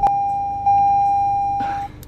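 A steady electronic tone, one unchanging high pitch like a bleep, with a sharp click at the start; it steps up in loudness about two thirds of a second in and cuts off shortly before the end.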